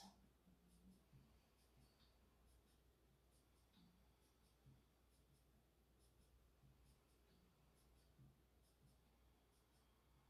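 Near silence: room tone with a low hum and a few very faint ticks.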